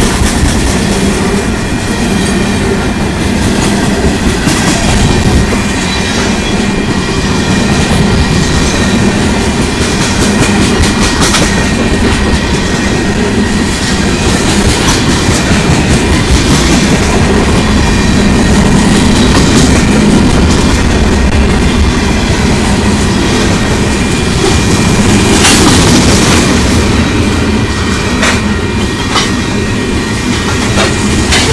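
Freight cars of a Union Pacific manifest train, mostly tank cars and autoracks, rolling past close by, a loud steady rumble with the wheels clicking over the rail joints.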